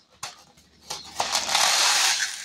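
Dry, short-cut vermicelli pasta pouring from its cardboard box into a plastic bowl of rice: a couple of light clicks, then a steady rushing rattle from about a second in.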